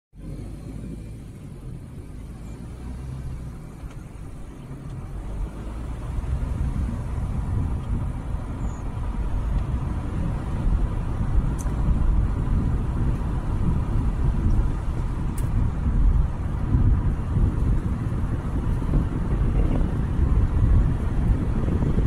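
Low, steady rumble of road and wind noise from travelling along a road in a vehicle, picked up by a phone microphone; it grows louder over the first several seconds as speed builds.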